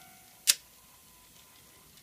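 A single sharp click about half a second in, over a faint steady hum.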